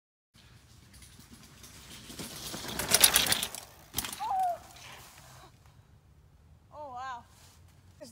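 Mountain bike rolling fast over a leaf-covered dirt trail and past close by, its tyres crunching through dry leaves and its rear hub ticking rapidly as it coasts, loudest at about three seconds in. A sharp knock follows about a second later, with a brief cry from the rider.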